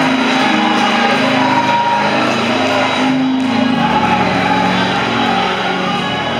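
Live church worship music: a woman's voice singing over instrumental accompaniment in a large hall, with a low bass coming in about four seconds in.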